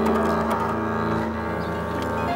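Double bass played with a bow, holding long, sustained low notes rich in overtones.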